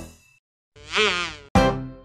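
A cartoon insect-buzz sound effect, under a second long, its pitch wobbling up and down. It comes in a gap in children's music: the previous tune fades out just before it, and a new tune starts abruptly with a thump right after.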